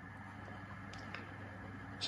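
Quiet room tone with a steady low hum and two faint ticks about a second in.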